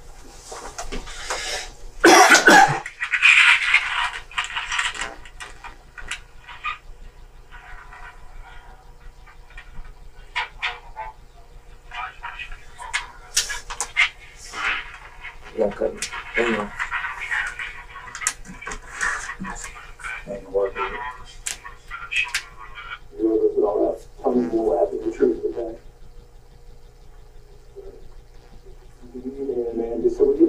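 Recorded speech played back through a small speaker, muffled and too indistinct to follow, with a loud knock of handling noise about two seconds in.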